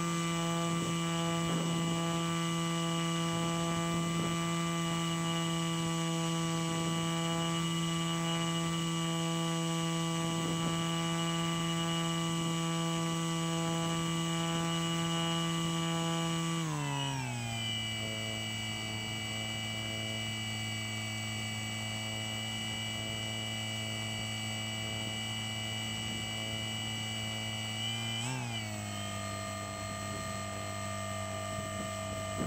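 A paramotor's motor and propeller running as a steady, pitched hum. The pitch steps down about halfway through as the throttle is eased, and near the end there is a brief blip up and back.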